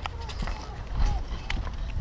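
Footsteps on pavement, sharp steps about two a second, over the low rumble of a handheld camera being moved.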